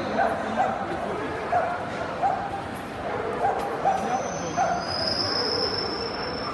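A dog yipping again and again: about seven short, high yips spread over several seconds, over the murmur of a crowded hall.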